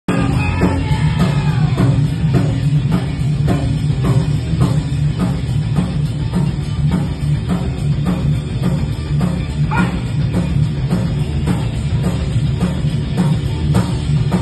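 Live rock band playing: electric guitar, bass and drum kit with a steady beat of about two drum hits a second.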